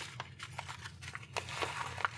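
Yellow paper mailing envelope crinkling and rustling in the hands as it is turned and shaken open, a run of small irregular crackles.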